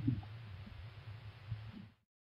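Low steady hum with soft, irregular low thuds. It cuts off abruptly at the end, where the recording is edited.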